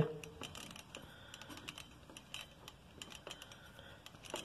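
Faint, irregular light clicks and ticks from a roller cart's plastic rollers as a stack of panels shifts across them.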